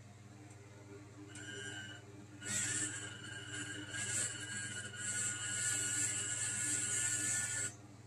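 Huina 1572 RC crane's small electric motors and gears whining as the upper works swing the boom slowly under ESC proportional control. The whine starts faintly about a second in, grows steadier and louder from about two and a half seconds, and cuts off just before the end.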